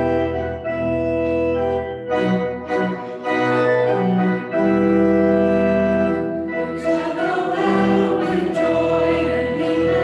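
Organ playing a hymn in sustained chords that change every second or so; from about seven seconds in, singing joins the organ.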